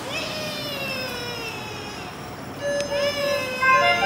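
Baby crying: one long wail that slides slowly down in pitch over about two seconds, then a second cry starting about two-thirds of the way in, over background music.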